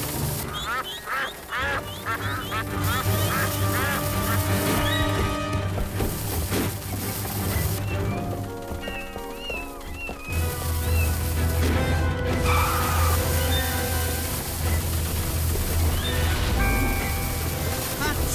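Film score music with ducks quacking over it, the quacks thickest in the first few seconds.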